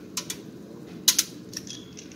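Light clicks and taps from small objects being handled: two faint ones near the start and a sharper pair about a second in.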